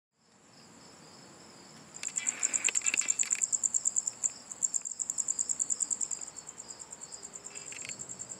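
Crickets chirping: a high, rapidly pulsing trill that starts faint and grows louder about two seconds in.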